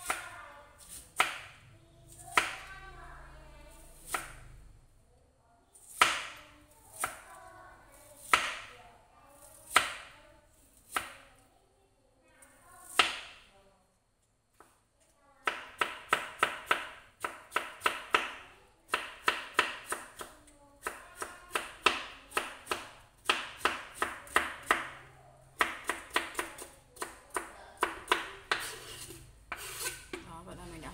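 Kitchen knife slicing fresh bamboo shoots into thin strips on a plastic cutting board: sharp knocks of the blade on the board. They come about a second apart at first, then after a short pause about halfway through, in quick runs of several cuts a second.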